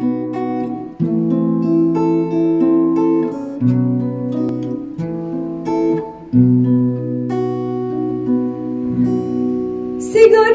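Acoustic guitar playing a solo chord intro: picked chords over ringing bass notes, with a new chord every one to two seconds.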